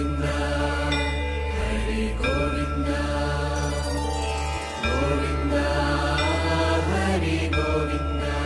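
Devotional outro music: a chanted mantra over a deep, steady drone, with the chant phrase starting afresh about five seconds in.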